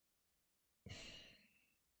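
A man's single short, breathy sigh about a second in, with near silence around it.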